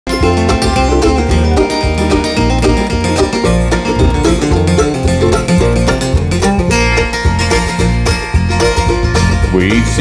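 Live bluegrass band playing an instrumental intro: banjo rolls over fiddle, mandolin and acoustic guitar, with an electric bass keeping a steady beat. A voice comes in near the end.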